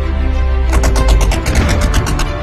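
Intro music with a deep bass and sustained tones; a fast run of percussion hits, about eight a second, comes in about halfway through.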